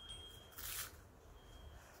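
Faint sounds of someone eating a dry, crumbly Weet-Bix biscuit, with one short breathy rush of noise a little after half a second in. A faint thin high tone comes and goes in the background.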